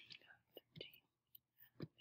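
Near silence: room tone with a few faint, whispery voice sounds and a short click near the end.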